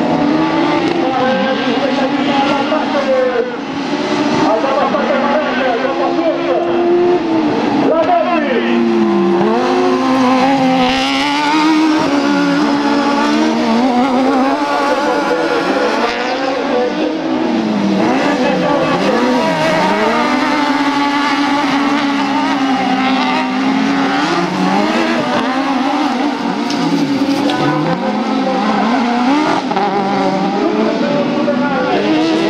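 Several 1600-class autocross buggies racing together on a dirt track, their engines revving high and dropping over and over. The overlapping engine notes keep sweeping up and down.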